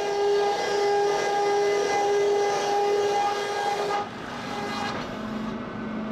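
Sawmill machinery running with a steady, high, multi-toned whine over a noisy bed; the whine drops away about four seconds in, leaving a fainter, lower hum.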